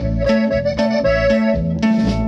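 Live norteño band playing an instrumental passage: accordion carrying the melody over guitar, bass and drums, with a steady beat of about four strokes a second.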